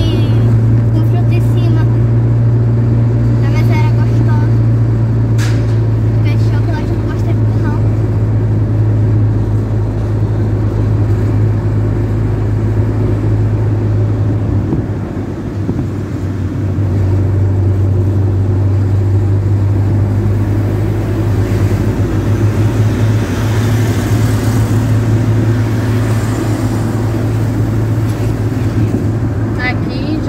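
A car driving through city traffic, heard from inside the cabin: a steady low engine and road hum that eases briefly about halfway through, then picks up again.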